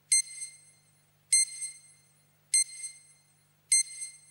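Bedside heart monitor beeping once per heartbeat, each beep short, high and ringing, four of them about 1.2 seconds apart.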